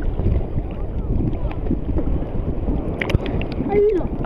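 Choppy seawater sloshing and lapping right at the microphone, with wind buffeting it: a steady, rough rush with most of its weight low down.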